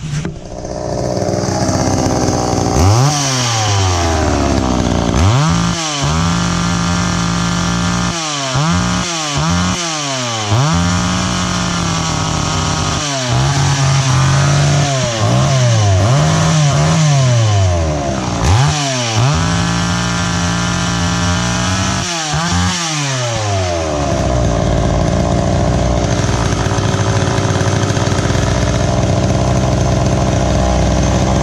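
Poulan 2000 two-stroke chainsaw, its carburetor freshly rebuilt, running on the bench. It is revved up and down repeatedly for about twenty seconds, then settles into steady running near the end.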